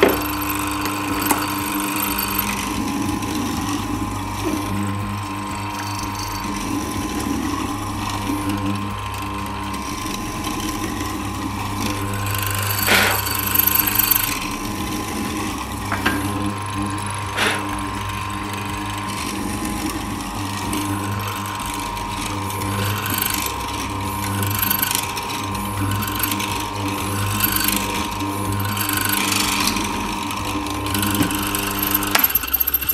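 SIP bench morticer's 370 W motor running steadily while its hollow square chisel and auger are plunged again and again into the wood, cutting a mortise in a succession of passes. Two sharper knocks stand out a little before and after the middle.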